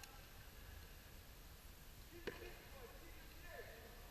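Near silence: faint open-air ambience with a few faint, distant shouts and a single sharp knock a little after two seconds in.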